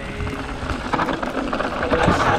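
Rocky Mountain Instinct mountain bike rolling fast over a loose, stony trail: tyres crunching on gravel and the bike rattling, with wind on the camera microphone. Faint background music underneath.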